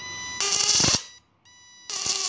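A homemade 12 V-to-1200 V electric fishing inverter gives a high steady whine, then its output arcs in a loud crackling burst. The whine-and-arc happens twice, about a second and a half apart.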